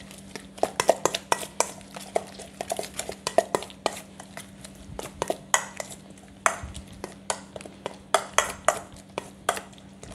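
A metal utensil stirring a thick mix of Greek yogurt and grated cucumber in a stainless steel bowl, clinking and scraping irregularly against the metal several times a second.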